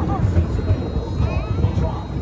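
Steady low rumble of a small kiddie roller coaster train running along its track, heard from a seat on the ride, with faint voices in the background.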